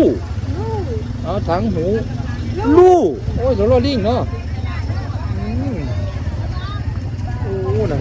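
Short phrases of speech over a steady low background rumble.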